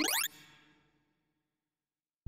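Synthesized electronic beeps from a sorting visualizer, their pitch climbing fast as the sorted array is swept through, then dying away within about a second into silence.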